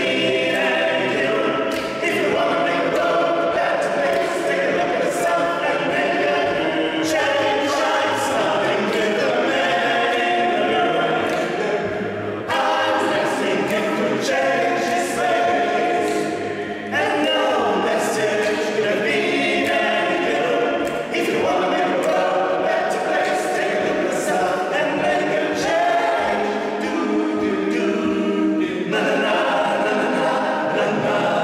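A male a cappella vocal group singing together without accompaniment, several men's voices in harmony.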